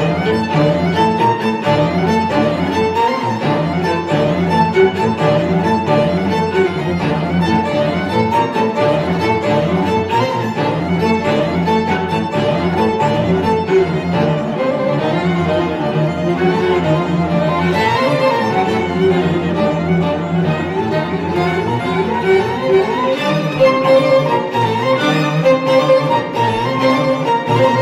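String quartet playing, two violins, viola and cello bowing together in a busy passage of many short notes.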